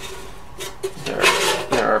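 Sheet-metal cover of an Agilent E3648A bench power supply scraping along the chassis as it is slid off, loudest about a second in.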